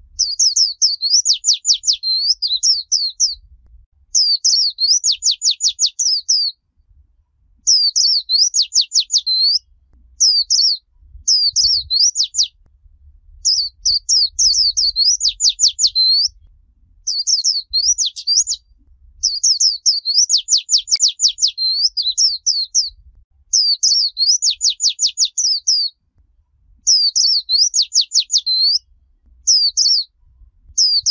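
White-eye singing its chattering 'líu chòe' song. High, rapid phrases of sweeping notes come in bursts of a second or two, with short pauses between them.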